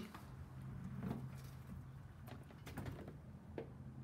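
Faint footsteps and handling knocks, a few irregular taps, over a steady low hum.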